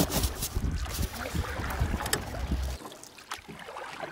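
Wind buffeting the microphone, with rubbing, scraping and clicking from a styrofoam cooler lid being handled and lifted off. The wind rumble drops away suddenly about three seconds in, leaving fainter scrapes.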